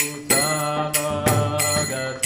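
Kirtan music: voices singing a devotional chant in a steady rhythm, with small hand cymbals struck about three times a second and ringing over the singing.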